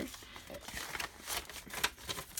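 Loose sheets of paper being handled and shuffled by hand, with light rustling and a few short taps and clicks.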